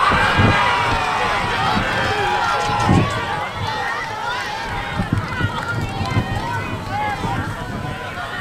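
Several voices of spectators and players shouting and calling out at once across a field hockey game, with no clear words, and two low, dull thumps about half a second and three seconds in.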